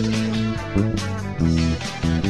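Electric bass guitar plucked through an amplifier, a line of short notes with one longer held note near the start, played along to a pop backing track with drums.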